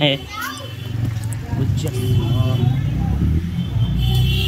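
Street background of faint, scattered voices over a steady low rumble that swells about a second in.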